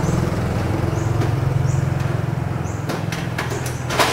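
A motor scooter's small engine running as it passes and moves away, its steady low hum slowly fading.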